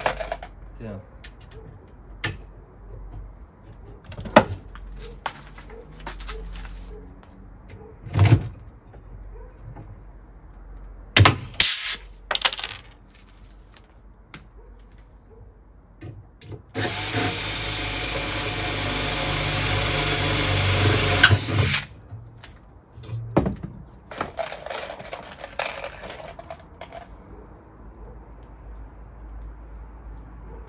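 Cordless drill drilling into an aluminium frame profile, one steady run of about five seconds past the middle that grows louder and stops with a sharp click. Scattered clicks and knocks of tools and metal parts being handled come before and after it.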